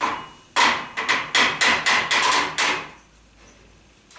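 A knife chopping on a cutting board: about a dozen sharp knocks in a quick, uneven run, each with a short ringing tone, stopping about three seconds in.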